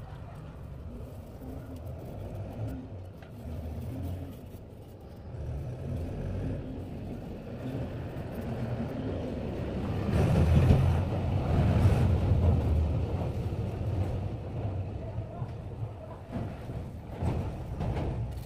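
Low engine rumble of a road vehicle, growing to its loudest about ten seconds in and then fading, with voices in the background.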